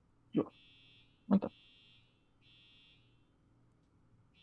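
Faint, high-pitched electronic buzz that cuts in and out in stretches of about half a second, over a faint low hum.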